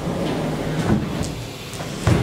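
Cardboard architectural model being handled: its card roof lifted and shifted, with rubbing and scraping of card and a few light knocks.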